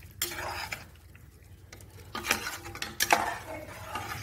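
Metal ladle stirring thick vegetable kurma in a pressure cooker pot, scraping and knocking against the pot in three short bouts; the sharpest knocks come in the second half.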